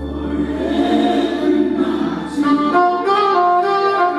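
Solo saxophone playing a slow gospel melody: a swelling, bending phrase in the first half, then a run of distinct notes. Underneath, a low sustained accompaniment chord fades out past the middle.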